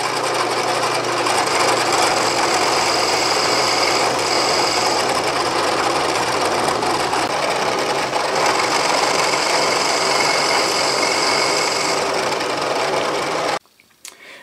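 Bridgeport milling machine with a half-inch end mill cutting a groove about an eighth inch deep in a cast aluminum mold half: a steady cutting noise over the running spindle. It cuts off suddenly near the end.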